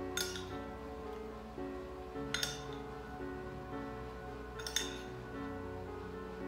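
Background music with three sharp clinks of a spoon against a ceramic bowl and gratin dishes, a little over two seconds apart, as breadcrumb topping is spooned out.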